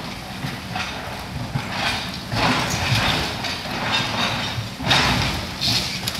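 Kobelco hydraulic excavator running, with irregular bursts of grinding and scraping metal as it tears apart a burnt-out electric train carriage for scrap. The loudest bursts come about halfway through and again near the end.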